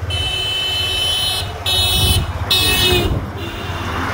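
A vehicle horn sounding in about four separate blasts of differing length, over a low engine rumble of road traffic.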